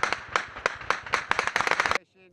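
Rifle gunfire: a rapid, irregular crackle of many sharp shots, some louder than others.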